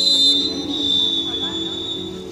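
Referee's whistle blown in one long, steady high note lasting nearly two seconds, the signal for the serve, over background music from the venue's speakers.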